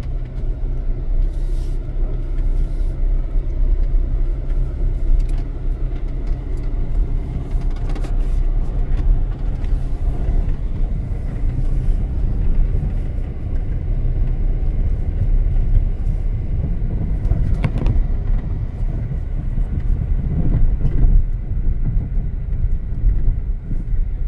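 Car driving, heard from inside the cabin: a steady low engine and road rumble.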